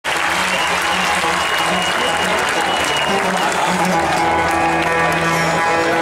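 Audience applauding and cheering while a band on stage begins to play low, held stringed-instrument notes; after about four seconds the applause thins and the music comes forward.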